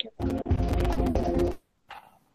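Quiz-game background music from Quizizz: a looping phrase of held notes over a bass line, which breaks off briefly shortly before the end.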